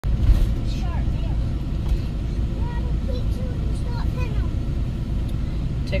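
Steady low rumble of a car driving, heard from inside the cabin, with faint voices over it.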